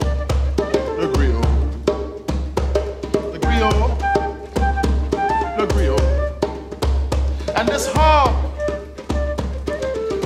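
Flute playing a wavering melody over a djembe, whose hand strokes give sharp slaps and deep bass tones in a loose, busy rhythm. Near the end the melody swoops up and back down.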